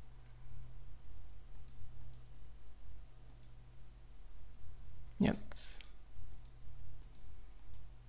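Computer mouse clicking a few times at scattered moments, short sharp ticks, over a steady low hum.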